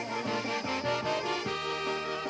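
Polka band playing an instrumental passage between sung lines. An accordion holds chords over electric bass guitar and a steady drum beat.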